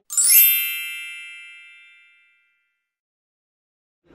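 A bright chime, the closing sound effect of an intro jingle: a quick upward shimmer into several ringing high tones that fade away over about two seconds.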